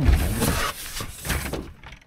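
Rummaging in a cardboard box: cardboard and packing rustling and scraping as a part is pulled out, with a low bump at the start and another about halfway through.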